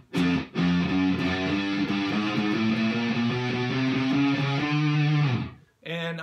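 Electric guitar playing a slow run of single picked notes, one after another, changing pitch note by note: a beginner's one-finger-per-fret exercise across the first four frets. The run stops shortly before the end.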